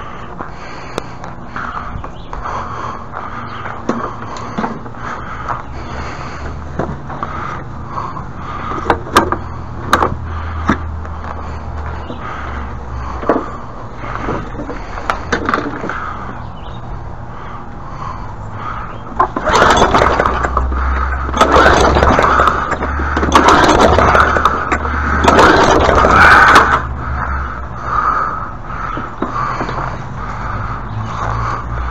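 Push lawn mower being moved over the ground, its wheels and deck scraping and rattling, with scattered clicks and then a loud stretch of scraping that lasts several seconds after the middle. A steady low hum runs underneath.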